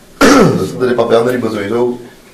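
A person's voice: a sudden loud vocal outburst about a fifth of a second in, falling in pitch, then voiced sounds without clear words until near the end.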